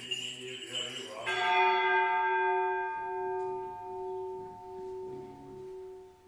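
A bell struck once about a second in, ringing out with a long tone that slowly fades.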